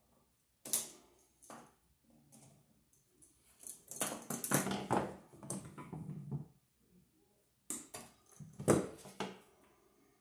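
Hand tools working the wiring at an electrical outlet: a couple of sharp clicks about a second in, a few seconds of scraping and rustling in the middle, then another run of clicks near the end.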